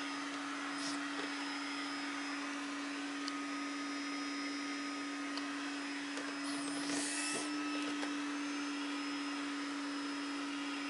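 A steady hum at one low pitch, running without a break, with a brief rustle about seven seconds in.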